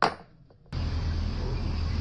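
A sharp metallic clink as a small steel pinion shaft is set down on a table. Under a second later comes a short click, then a steady hum with a background hiss.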